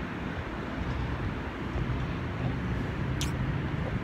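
Steady low rumble of outdoor city background noise, with a brief high-pitched squeak about three seconds in.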